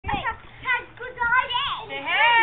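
Young children's voices: a run of short, high-pitched calls and chatter, with no clear words.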